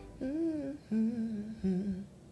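A woman humming a short tune with her mouth closed, in three brief phrases, each a little lower in pitch than the one before.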